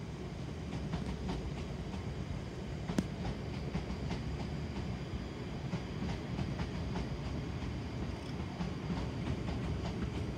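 Two coupled Class 350 Siemens Desiro electric multiple units pulling out of the station, a steady rumble of wheels on rail as the carriages roll past. A single sharp click about three seconds in.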